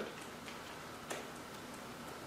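Faint, scattered clicks of laptop keyboard keys being typed on, a few sharper ticks in the first second or so.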